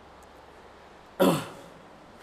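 A man clears his throat once, briefly, a little over a second in; otherwise only quiet room tone.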